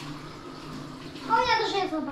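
A short, high-pitched vocal sound that falls in pitch, about a second and a half in, after a quiet first second.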